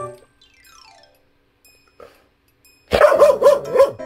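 A Jindo dog barks about four times in quick succession, starting about three seconds in. Before the barks, a falling run of tones is heard.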